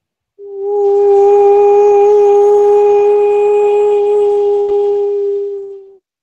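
A woman's voice toning: one long, steady held note, starting about half a second in and fading out near the end.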